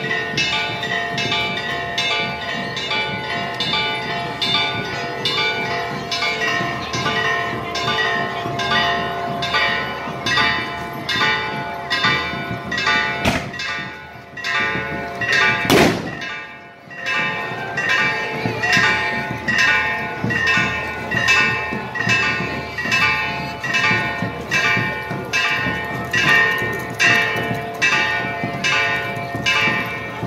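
Church bells ringing in a steady, rapid peal, a bit under two strokes a second, each stroke ringing on. About halfway through the ringing briefly drops away with a sharp click, then carries on as before.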